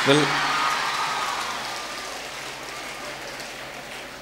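Audience applause that starts loud as the speaker breaks off and dies away gradually.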